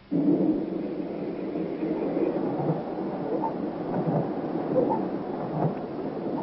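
Rainstorm: a steady rush of heavy rain with low rumbling, starting suddenly.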